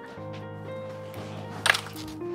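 Background music with held keyboard-like notes, played back from a recording. Near the end comes a single sharp knock, louder than the music, as someone moves from the chair and microphone area.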